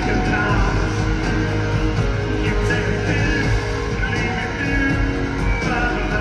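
A live rock band playing a guitar-driven song through an arena sound system, recorded from the audience stands, loud and continuous.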